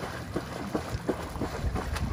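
Water splashing and churning as dogs paddle and chase each other through a swimming pool, with wind rumbling on the microphone.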